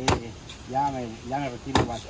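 Machete chopping into a fresh coconut: two sharp strikes about a second and a half apart, one just after the start and one near the end, with a lighter tap in between.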